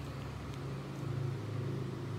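A low, steady motor hum that grows a little louder about a second in.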